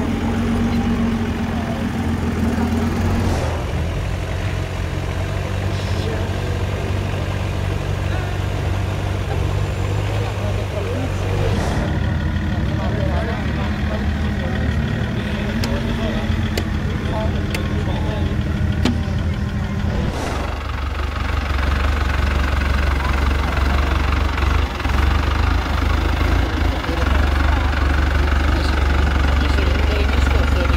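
Lifted off-road 4x4 engines running at low, near-idle revs while crawling slowly up a dirt climb. One vehicle follows another, and the engine note changes abruptly three times.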